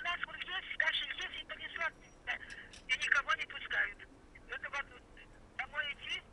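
Speech heard over a telephone: a voice talking on the other end of a call, sounding thin through the phone.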